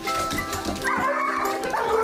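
A dog yelping and barking in high, wavering cries that start about a second in, over background ukulele music.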